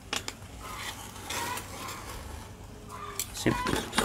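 Snap-off utility knife drawn along a steel ruler, slicing through a rubber car floor mat: a few sharp clicks, then scratchy cutting strokes as the blade drags through the rubber.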